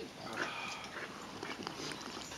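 A dog sniffing and snuffling.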